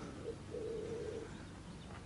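A bird calling: a short low note, then a longer, steady low note lasting under a second.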